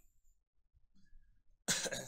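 Mostly quiet, then a man's short cough about three-quarters of the way through.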